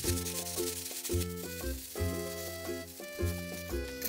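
Light background music with a bass note about once a second, over faint crackling of toasted laver sheets being crushed in a plastic bag near the start.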